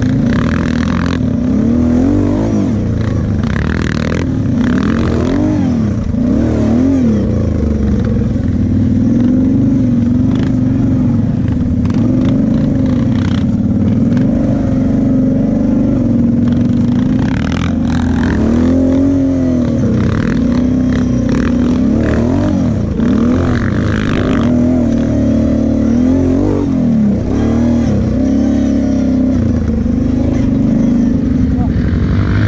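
Kawasaki KFX sport quad's engine running under way, its pitch rising and falling over and over as the throttle is opened and closed.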